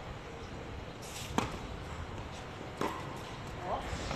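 Tennis racket strings striking a ball twice during a rally, two sharp hits about a second and a half apart, the first the louder, over a steady low background rumble.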